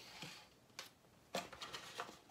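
A few soft clicks and knocks of handling plastic model-kit parts and packaging, the clearest about halfway through, over faint room noise.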